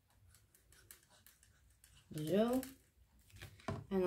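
Faint small ticks and rustles of cardstock and a squeeze glue bottle being handled on a cutting mat while glue is applied to a card flap, with a short voiced sound about two seconds in.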